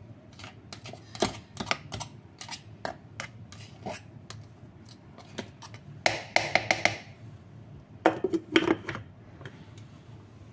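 A plastic spatula scraping and tapping inside the clear plastic bowl of an electric food chopper, pushing minced garlic down from the sides: a run of light clicks and scrapes, with two louder, pitched scraping squeals about six and eight seconds in.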